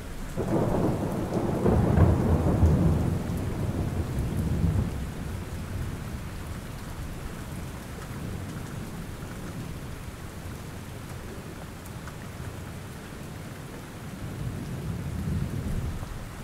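Steady rainfall with a roll of thunder that swells in the first seconds and dies away, and a second low rumble building near the end.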